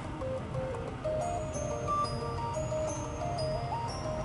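A pop song playing from a Toshiba laptop's built-in Harman Kardon speakers, heard in the room: a melody of short held notes stepping up and down.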